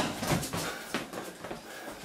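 Light scuffs and taps of sneakers on a tiled floor as a karate fighter steps back out of a lunging punch into his stance.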